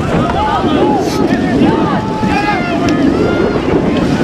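Several high-pitched youth voices shouting short, overlapping calls across open water, over steady wind noise buffeting the microphone.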